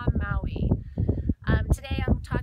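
A woman speaking, with wind noise on the microphone underneath, and a brief pause in her speech about halfway through.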